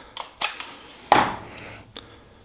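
Harbor Freight Warrior 12V battery pack being fitted into its plastic charger. There are a few light plastic clicks and taps, one louder clack a little past a second in, and another click near the end.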